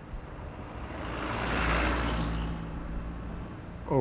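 A passing vehicle: engine noise and rush swell to a peak a little past the middle, then fade away.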